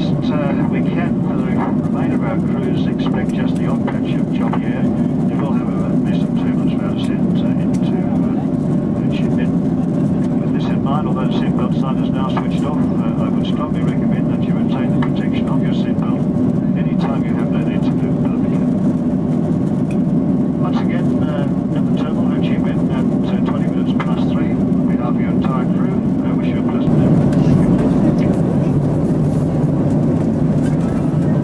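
Steady cabin noise of a Boeing 767-300ER airliner in cruise, the hum of engines and airflow heard from inside the passenger cabin, with indistinct voices over it. It grows a little louder and deeper near the end.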